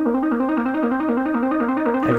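Moog synthesizer playing a fast counterpoint line of short, plucky notes, a quick pattern that bounces evenly between a few pitches.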